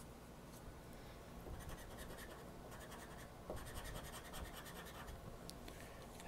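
Faint scratching on a scratch-off lottery ticket, in two runs of quick strokes, the first starting under two seconds in and the second a little past the middle.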